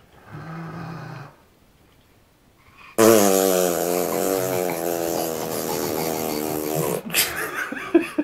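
A person blowing a long, loud raspberry, a wavering lip buzz that starts suddenly about three seconds in and lasts about four seconds. Short, quick sounds follow near the end.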